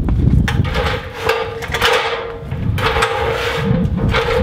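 Metal ladder scraping and clanking in a series of irregular knocks as it is moved and set in place.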